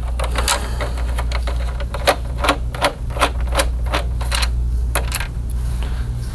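Irregular sharp clicks and small rattles of a screwdriver and small screws as the last screws come out of a PlayStation 5's casing, with a steady low hum underneath.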